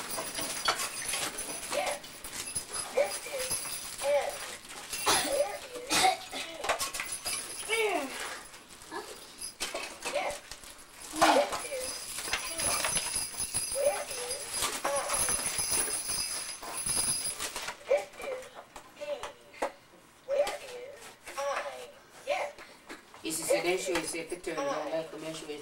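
Indistinct voices talking quietly, with scattered rustles and knocks, the loudest about eleven seconds in.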